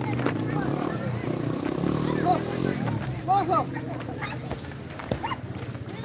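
People talking, several voices over one another, with two sharp knocks: one just after the start and one near the end.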